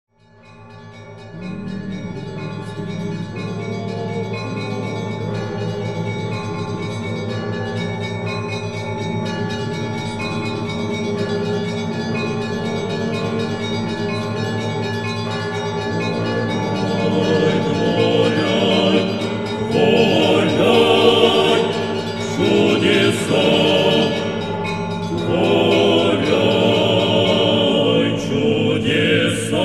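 Church choir singing sustained chords as opening music, fading in over the first couple of seconds and growing fuller and louder in the second half.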